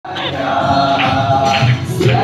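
A large group of people singing together, holding long notes in unison.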